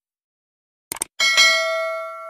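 Subscribe-button animation sound effect: a quick double click about a second in, then a notification bell rings and slowly dies away.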